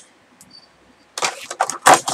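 Plastic packaging crinkling and rustling as a pair of headphones is handled and unwrapped. After a quiet first second it comes in several loud, sharp bursts.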